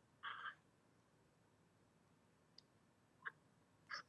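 Near silence in a pause on a video-call line, with a brief faint noise just after the start and two faint clicks in the second half.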